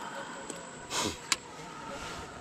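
A spinning rod swishing through a cast about a second in, followed by one sharp click from the spinning reel.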